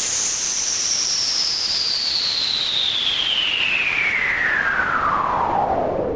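Synthesized downlifter closing an electronic dance track: a steady hiss with a filtered whistle gliding slowly down from very high to low pitch.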